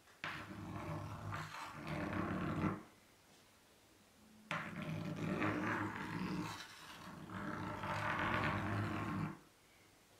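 Chalk dragged across a blackboard in two long strokes, the first about two and a half seconds, the second about five seconds after a short pause; the chalk chatters as it skips, leaving a dotted line.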